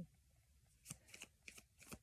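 Tarot cards being shuffled: a quick run of faint, short card snaps starting about a second in.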